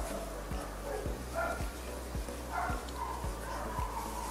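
A dog barking faintly, a few short barks spread across the moment.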